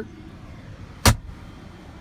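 Pickup truck engine idling, heard from inside the cab as a steady low hum. One sharp knock sounds about halfway through.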